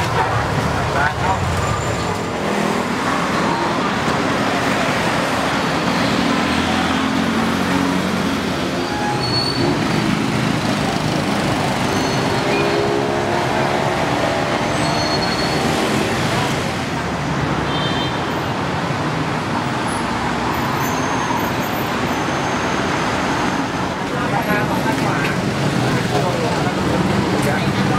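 Busy street-market ambience: steady road traffic noise, with people's indistinct voices and chatter over it at times.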